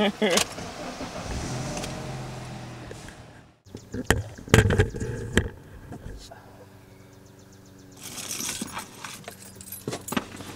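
Handling noise from a camera being gripped and adjusted inside a car: a cluster of sharp knocks and rubbing, then a low steady hum and a brief rattle near the end.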